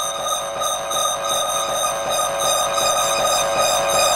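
Hardcore electronic track in a breakdown: a held, many-layered synth chord with a fast shimmering pulse, high and thin with no bass or drums, slowly swelling in level.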